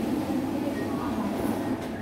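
Banknote-counting machine running, whirring steadily as it riffles a stack of notes through, its count reaching 100 near the end.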